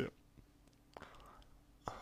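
A man's faint mouth click about a second in, followed by a soft intake of breath, and another click near the end, over a faint steady room hum.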